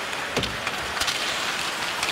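Ice hockey game sound: a steady arena crowd din with skates on the ice and a few sharp clacks of sticks and puck, the loudest about half a second and one second in.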